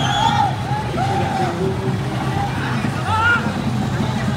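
Several voices shouting and calling over the steady low running of pickup truck engines in street traffic.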